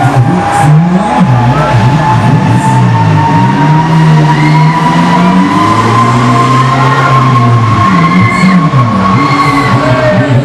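HUSS Break Dancer fairground ride's drive machinery running under the platform, a steady whine slowly rising in pitch as the ride speeds up, over a continuous mix of lower shifting tones.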